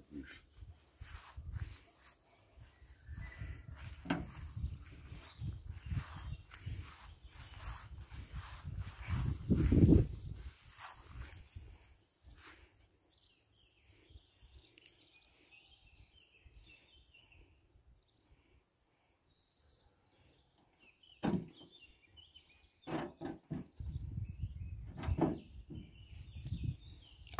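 Irregular knocks, clatter and rumbling as a wheelbarrow loaded with long wooden planks is handled and moved over grass, loudest about ten seconds in. A quiet stretch follows with faint birdsong, then a single sharp knock and a few more knocks near the end.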